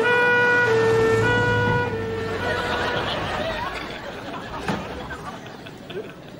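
Ambulance two-tone siren, stepping between its two notes roughly every half-second; it stops about two seconds in, leaving quieter street sound with one sharp knock near the end.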